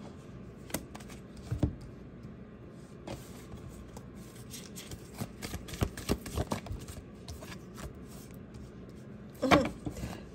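Tarot cards being handled and dealt onto a table: scattered soft flicks and taps, bunched most thickly around the middle.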